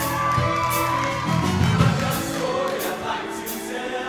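Live upbeat pop song from a show choir and backing band: voices singing over drum kit and cymbal hits, with a steady beat.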